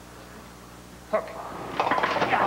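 Bowling ball rolling down a lane, a faint low rumble under quiet arena murmur. Voices and laughter rise near the end.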